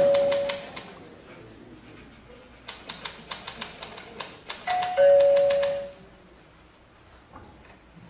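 Typewriter keys clacking in quick bursts, pausing for about two seconds in between. A two-note ding-dong doorbell chime rings at the start and again about five seconds in.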